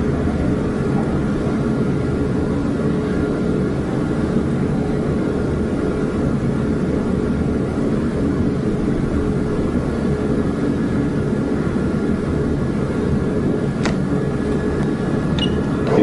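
Steady low rumble with a faint constant hum, machine or room noise, and a single sharp click near the end.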